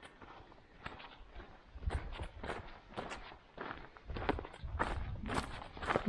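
A person's footsteps walking over dry gravel and leaf litter, about two steps a second, louder in the second half.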